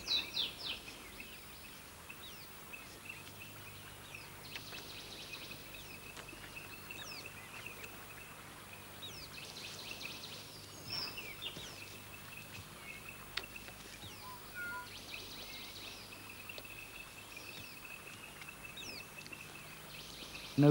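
Forest ambience: scattered bird chirps and calls over a steady high-pitched drone, with a short buzzy hiss returning about every five seconds.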